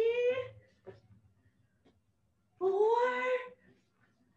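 A voice calling out a slow, drawn-out count, each number rising in pitch: the tail of one number at the start and another about two and a half seconds later.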